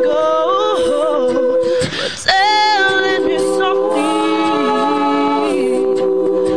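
All-female a cappella group singing held chords with a melody line moving above them. About two seconds in, the sound briefly drops with a breathy noise before the next chord comes in.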